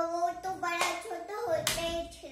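A boy's voice making drawn-out, sing-song vocal sounds without clear words, with two sharp hand claps or slaps, one just under a second in and one near the end.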